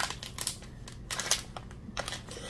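A few short rustles and clicks of plastic packaging being handled, scattered through the two seconds.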